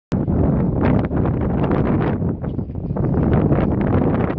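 Wind buffeting the microphone: a loud, low, steady noise with irregular gusts.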